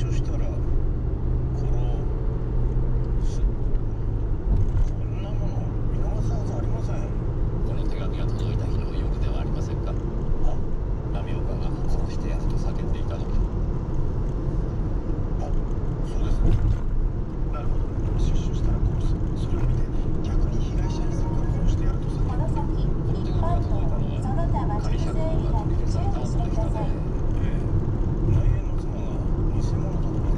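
Steady road and engine rumble inside a moving car's cabin, with a faint voice talking in the background.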